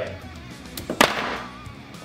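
Plastic action figures swept off a toy wrestling ring by a hand and clattering down onto a wooden table, with one sharp knock about a second in and a smaller one just before it.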